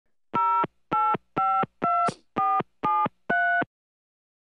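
Seven touch-tone (DTMF) telephone keypad tones dialed in quick succession, about two a second. Each is a short beep of two pitches sounding together, and the pair changes from key to key.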